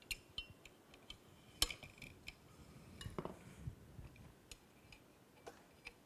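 Faint, scattered clicks and taps of a small magnetic stand being slid onto and along a goniometer track, with two louder knocks about one and a half and three seconds in.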